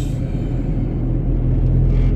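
Van engine and road noise heard from inside the cab while driving: a steady low rumble that swells slightly near the end.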